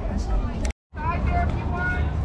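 Voices of people talking nearby over a steady low rumble. The sound drops out completely for a moment about three-quarters of a second in, then resumes with more talking.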